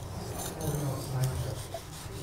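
Faint scraping and light tapping of a metal trowel working sandy soil around a loose brick, under low murmured voices.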